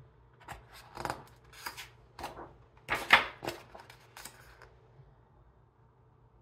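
Close-up paper rustling and swishing as the thick pages of a large hardback book are turned and handled by hand. It comes as a run of quick swishes over about four seconds, the loudest about three seconds in.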